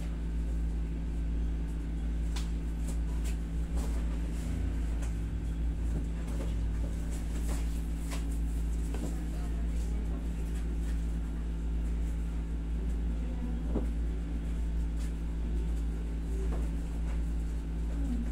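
Steady low hum of a window-type room air conditioner, with faint scattered clicks.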